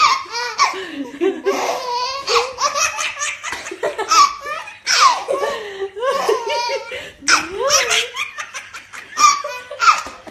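A baby laughing hard, in repeated high-pitched bursts of laughter.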